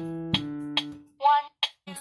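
Piano playing the last notes of a one-octave D major scale with the left hand, ending on a single held note that dies away about a second in. A metronome ticks evenly, a little over twice a second, and a voice speaks briefly near the end.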